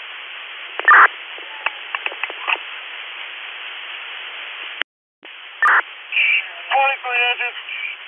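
Fire department two-way radio channel: a steady hiss of an open channel with a sharp burst about a second in and scattered clicks, then a brief dropout halfway through. Another burst follows, and a voice starts coming through near the end.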